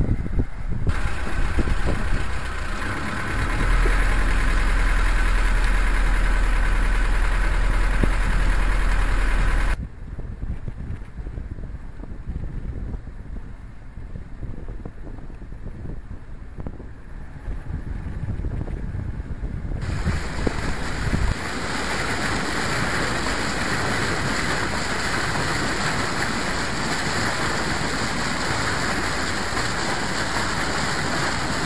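A 37 hp Bladt diesel driving a sailboat under way, running steadily. In the quieter middle stretch it turns at about 1500 rpm. A heavy low wind rumble on the microphone covers the first third, and water rushes steadily along the hull in the last third.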